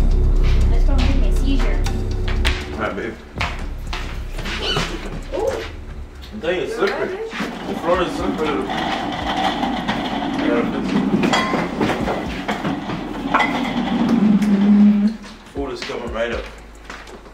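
Background music with a steady low bass that cuts out about two and a half seconds in, followed by indistinct voices and small clicks and knocks of people moving around a kitchen.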